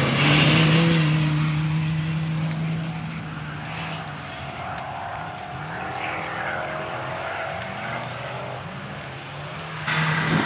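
Off-road racing Land Rover engine running hard, loudest in the first few seconds as it passes close, then farther off, with its pitch rising several times as it accelerates through the gears over rough grass.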